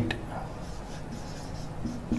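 A marker writing on a whiteboard: faint, scratchy strokes.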